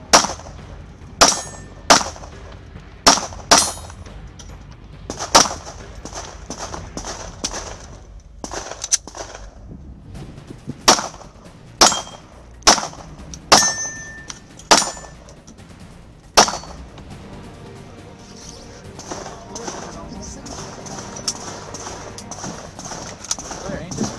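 A string of about a dozen gunshots at uneven intervals, with a pause of several seconds in the middle. A couple of the shots are followed by a short ring from a struck steel target.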